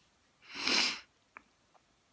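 A woman's single sharp, noisy breath through the nose, about half a second long, starting about half a second in, then two faint clicks.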